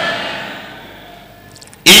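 Amplified preaching dying away in the reverberation of a large hall, leaving a brief lull, then a man's loud amplified preaching voice starts again abruptly near the end.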